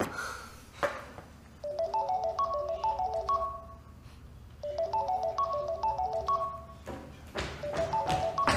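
Mobile phone ringtone: a short melody of clear stepping electronic notes, played twice with a pause between. Two soft knocks come before it in the first second.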